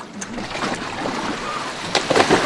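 Steady rush of sea water and wind, with little low rumble.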